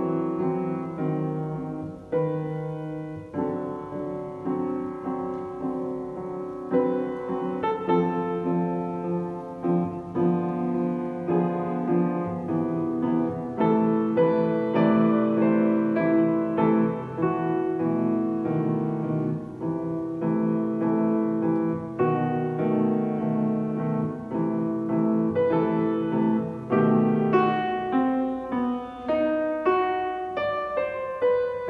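Grand piano played solo: a prelude, with chords and melody notes struck one after another and left ringing.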